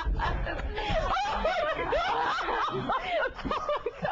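A man and a woman laughing hard and uncontrollably, in many short rising-and-falling peals.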